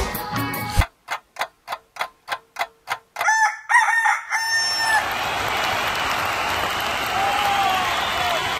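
The song's music stops under a second in, giving way to about two seconds of evenly spaced ticks, roughly three a second. A rooster then crows once, a run of short notes ending on a long one, and an even hiss of background noise follows.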